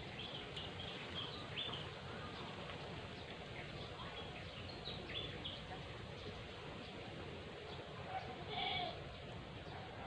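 Faint outdoor background with scattered short, high-pitched animal calls, and one louder call near the end.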